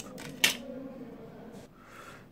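Serrated blade of a handheld vegetable peeler scraping thin skin off an avocado: one short, sharp scrape about half a second in, then faint scraping.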